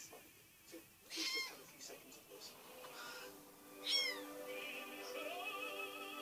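Five-week-old kitten mewing twice, short high-pitched cries falling in pitch, the second and louder about four seconds in. Background music with held, wavering sung notes comes in over the second half.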